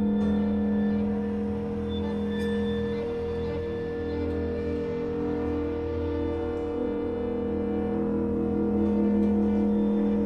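Contemporary classical ensemble music: long held tones over a low drone, with a pulsing figure repeating beneath them.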